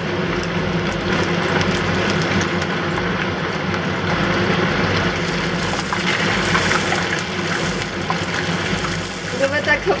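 Tapioca-starch-coated beef slices deep-frying in hot oil: a steady, vigorous sizzle and bubbling. It is put down to moisture probably still left in the beef, which makes the oil spatter.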